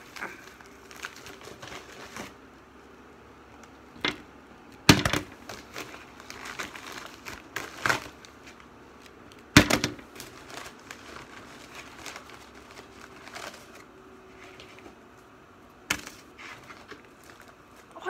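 Packaging crinkling and rustling as a mailed package is unwrapped by hand, with several sharp knocks, the loudest about five and ten seconds in.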